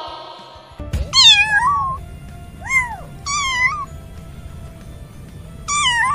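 Kittens meowing: four high-pitched mews over a steady background hiss, the first about a second in and the last near the end.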